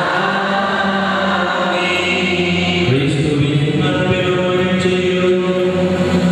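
Liturgical chant sung in long held notes that move to a new pitch every second or so.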